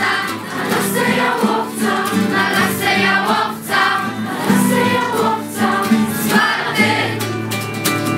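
A group of children and teenagers singing a song together to acoustic guitar accompaniment. The singing stops near the end, leaving the guitar strumming on its own.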